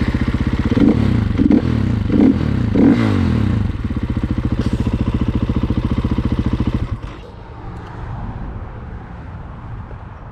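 450 dirt bike's single-cylinder four-stroke engine running just after being started. It is blipped several times in the first three seconds, then runs steadily, and drops much quieter about seven seconds in.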